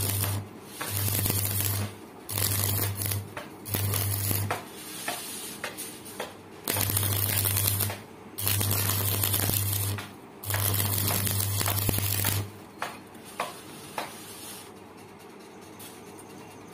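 Electric arc welding: the arc crackles and hisses over a low buzz in about seven short runs of one to two seconds each, stopping about three-quarters of the way through. A few light clicks and knocks follow.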